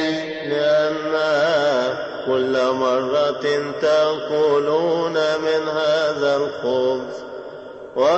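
Male chanting of a melismatic Coptic liturgical hymn line, the pitch winding up and down over long held syllables, fading near the end.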